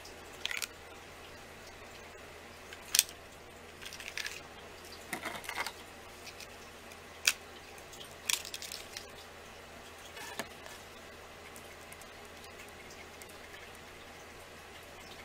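Scattered sharp clicks and small taps from paint containers and tools being handled on a work table, two clicks standing out about three and seven seconds in, with quieter rattles between them.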